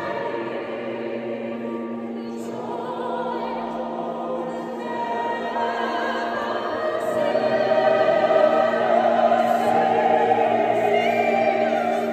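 Mixed choir of men's and women's voices singing sustained, overlapping lines, swelling louder about seven seconds in.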